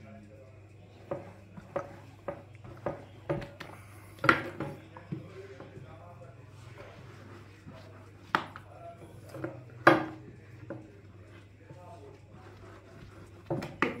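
A long thin metal rolling rod (oklava) knocking and clicking against a marble pastry board as soft dough is rolled out thin, in irregular taps with a few louder knocks.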